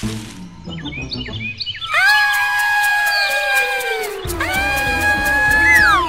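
Cartoon soundtrack music: a run of short chirping notes, then two long held high tones, the first sliding slowly down in pitch and the second ending in a quick falling glide, over a low backing.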